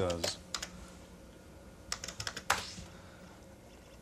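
Keys being typed on an IBM PC AT keyboard to start a program: a couple of keystrokes about half a second in, then a quick run of several keystrokes about two seconds in.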